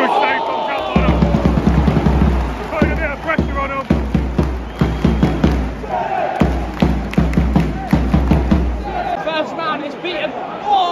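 Football crowd in the stand singing a chant, with loud rhythmic claps or thumps beating along, from about a second in until near the end.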